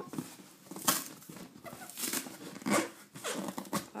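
A cardboard delivery box being torn open by hand: a series of short ripping sounds, the loudest about a second in.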